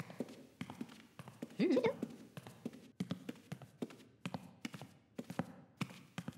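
Irregular light clicking footsteps, like hard soles approaching, with one short squeaky up-and-down character call about a second and a half in.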